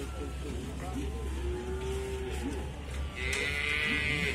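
Cattle mooing, with a drawn-out call in the middle and another near the end, over the chatter of many people talking.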